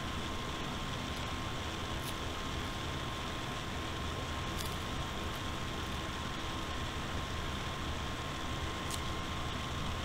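Steady room hiss with a faint, constant high hum, and a few faint ticks.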